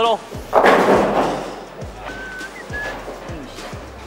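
A bowling ball crashes into the pins about half a second in, a loud clatter that dies away over a second or so. Background music with a steady beat plays throughout.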